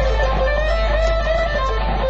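Electric guitar playing an improvised lead solo through an amplifier, with long held single notes, over a steady low hum.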